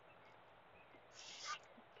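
Near silence, with one brief faint hiss a little over a second in.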